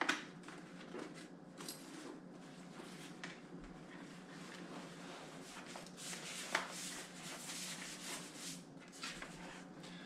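Faint rustling and rubbing of a Castle X EXO CX950 modular snowmobile helmet being pulled on over the head, its padding and shell brushing against head and hands, with a light click at the start and another about six and a half seconds in.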